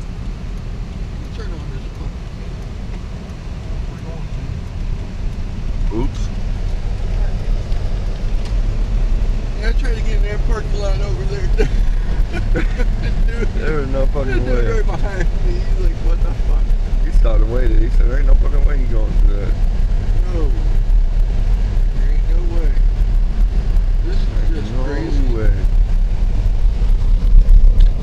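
Steady low rumble of a vehicle's engine and tyres on a snow-covered road, heard from inside the cabin, growing louder a few seconds in. Faint voices come and go from about ten seconds in.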